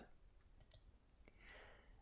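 Near silence, with a few faint computer mouse clicks and a soft breath near the end.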